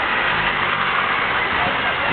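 A MINI hatchback's engine running at low speed as the car rolls up close and slows.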